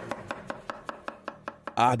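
Kitchen knife chopping tomatoes on a wooden cutting board, in quick even strokes about five a second. A man starts talking near the end.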